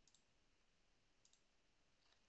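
Near silence: faint room tone, with a faint double click of a computer mouse a little over a second in.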